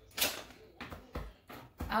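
Chef's knife chopping fresh rosemary on a cutting board: a few separate taps of the blade against the board, spaced about a third of a second apart, to mince the leaves fine.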